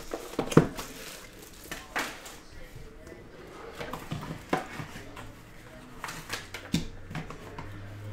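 A cardboard trading-card box being handled and opened on a table, with a few sharp clicks and knocks spaced a second or two apart. A faint low hum comes in near the end.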